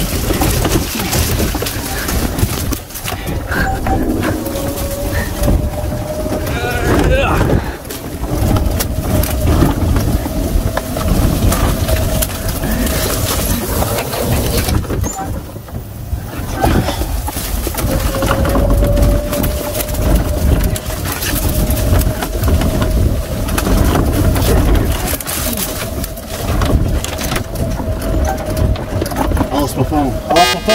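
Golf cart driving over a rough wooded trail: continuous rumbling and irregular jolts and rattles of the cart over roots and pine needles, with a faint steady whine from the drive that wavers slightly.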